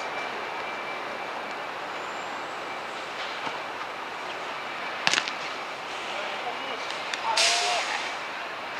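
Steady outdoor background noise from a futsal game, with one sharp kick of the ball about five seconds in and a brief shout near the end.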